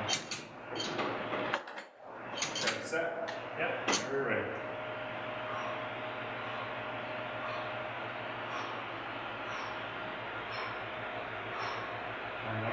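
Steady whir of electric fans with a faint hum, and a few short clicks and knocks in the first four seconds.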